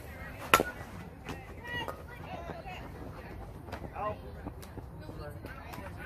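A softball bat hitting a pitched softball: one sharp crack about half a second in.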